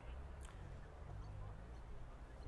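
Faint background ambience: a low, uneven rumble with a single faint click about half a second in.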